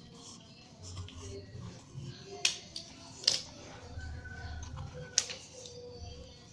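Young coconut leaf (janur) being twisted by hand into a spiral tube: soft rustling of the leaf with three sharp crackling snaps as it creases, the last near the end.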